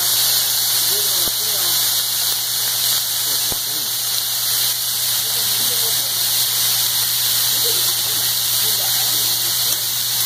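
Broccoli, onion and mushrooms sizzling on a hot teppanyaki griddle, a steady hiss, with restaurant chatter behind it.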